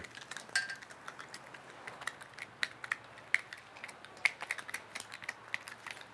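Scattered light clicks and ticks, several a second, from handling fishing tackle and a just-landed mangrove snapper.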